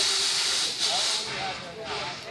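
Steam locomotive 'York', a replica 4-4-0, letting off steam: a hiss that starts sharply and fades over about a second and a half.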